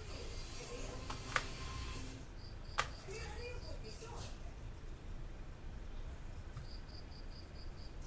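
Kitchen knife slicing through a red onion on a chopping board, with sharp knocks of the blade on the board about one and a half and three seconds in. Two short runs of rapid high chirps sound faintly in the background.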